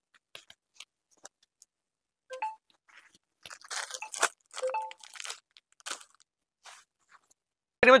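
Rustling and crinkling of folded sarees being handled and set down on a display, with faint scattered clicks early on and the busiest handling noise in the middle.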